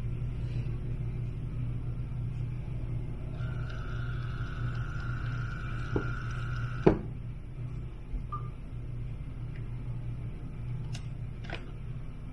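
Brother P-touch Cube label printer printing a label: a steady motor whine of about three and a half seconds while the tape feeds out, ending in a sharp click. A low steady hum runs underneath throughout.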